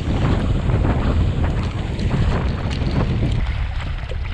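Wind buffeting an action camera's microphone with a heavy, steady rumble, over the rush and splash of water as the camera moves through a muddy river.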